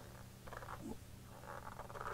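Faint, brief scuffing handling sounds over a low steady hum: hands with a shop towel turning a spin-on transmission filter hand tight.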